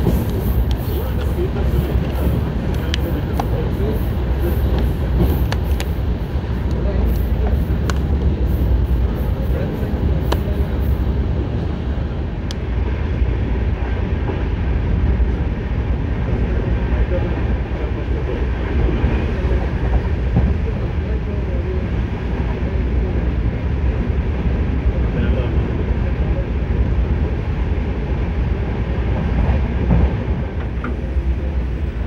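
Passenger express train running at speed, heard from an open coach doorway: a steady, loud low rumble of wheels on rails. A regular clatter of sharp clicks, a couple a second, runs through the first ten seconds or so.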